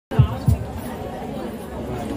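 Indistinct chatter of people in a hall, with two short, low thumps near the start.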